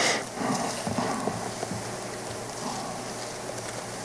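Bible pages being turned while a passage is looked up: a brief rustle at the start, then faint scattered rustling and light taps.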